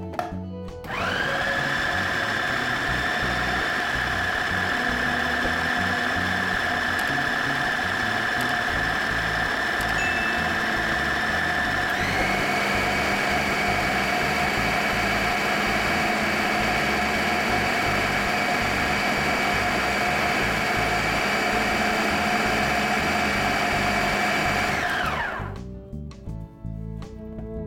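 Countertop food processor motor blending a thick green herb paste. It makes a steady whine that spins up about a second in, steps up in pitch about halfway through, and winds down near the end.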